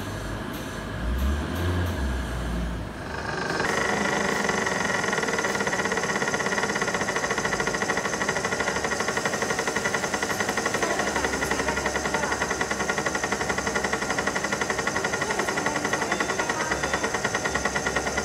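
3D crystal laser engraving machine running while its green laser engraves inside a glass crystal block: a steady mechanical buzz with high, fixed whining tones and a fast, even pulsing. It starts abruptly about three and a half seconds in, after a few seconds of low rumble.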